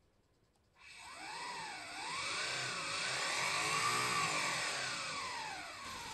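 Homemade optical engine-sound generator imitating a Subaru EJ20 flat-four with equal-length exhaust: laser-read spinning cardboard discs drive a speaker that rings a can for a metallic tone. It starts about a second in and is revved up and down, two short blips and then a longer rise peaking about four seconds in, before falling back to a steady idle near the end.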